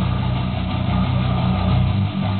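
Electric bass guitar picking fast repeated low notes, a dense, steady low drone, played along with the song's recording.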